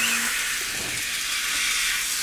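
Shower water running in a steady hissing spray onto a dog's wet coat during its bath. A low hum stops just after the start.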